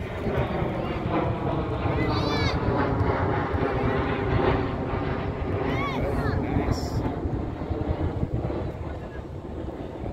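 A distant engine's steady drone that fades out near the end, with a few brief high-pitched shouts from the players.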